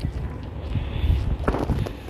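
Wind rumbling on a handheld microphone outdoors, with footsteps on paving and a brief sharp sound about one and a half seconds in.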